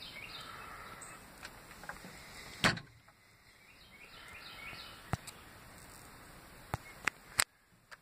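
A single sharp knock about two and a half seconds in, then a few lighter clicks near the end, over a faint steady background hiss.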